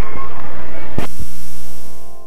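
Loud hiss and mains hum from a VHS tape's audio track. About a second in come two sharp clicks, and the hum turns into a buzz of several steady tones that starts to fade near the end.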